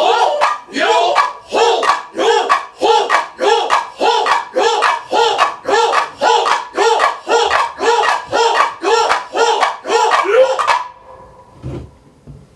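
Voices of a group of performers shouting short calls in a steady rhythm, about two and a half a second, each call rising and falling in pitch. The calls stop abruptly near the end.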